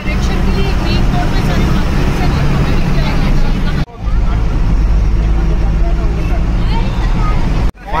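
Steady low engine and road rumble heard inside a moving bus, with children's voices chattering in the background. The sound drops out briefly about halfway through and again near the end.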